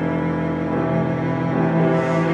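Bowed cello playing sustained low notes in a cello and piano sonata.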